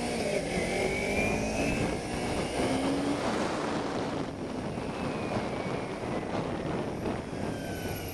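Kawasaki Ninja 250R parallel-twin engine running under way, heard through steady wind rush on the microphone, with the engine note rising and falling faintly.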